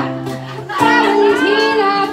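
Solo singing with acoustic guitar accompaniment. After a brief lull, a new sung phrase begins just under a second in, over held guitar notes.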